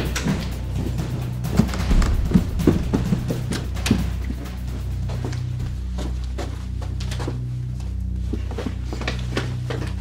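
Low, steady droning background music, with a run of quick irregular footsteps over the first four seconds that thins out after.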